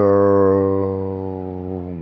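A man's voice holding one long, low, steady 'uhhh' at a single pitch, loud at first and fading a little: a drawn-out hesitation sound while he works out what comes next.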